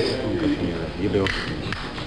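Hand-made clicking taps close to a hand-held microphone, made by working the fingers and cupped hands to imitate castanets (the "conejo" trick), with voices murmuring underneath.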